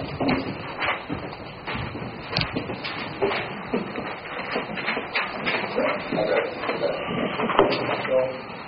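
Sheets of paper rustling and being handled as handouts are passed around, with scattered small clicks and knocks.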